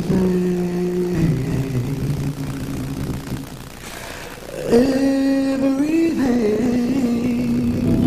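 Live gospel music: long held sung notes that slide from one pitch to the next, easing off briefly about four seconds in before swelling again.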